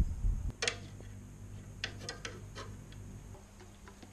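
A loud low rumble stops about half a second in. Light metallic clicks and taps follow as copper tubing is handled, a few scattered knocks with a brief ring, over a faint steady low hum.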